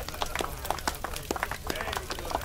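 Outdoor film scene sound: a busy run of irregular sharp cracks and knocks over indistinct voices and a low rumble.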